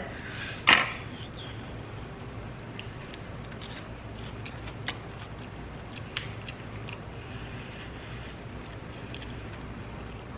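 Quiet room tone with faint chewing of buttered toast and a few small, scattered clicks as the piece is handled.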